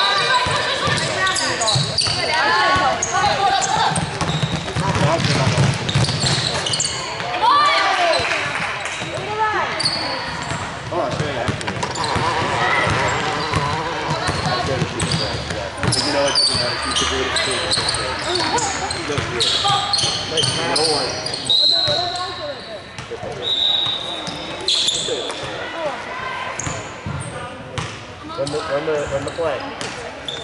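Indoor basketball game on a hardwood court: a basketball dribbling, sneakers squeaking in short high chirps, and players and coaches calling out, all echoing in a large gym.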